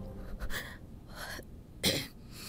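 A crying woman's breaths and sniffs: a few short breathy ones, then a sharper, louder one near the end.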